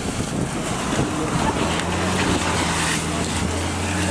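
A steady low engine hum sets in about a second and a half in, over a continuous rushing noise.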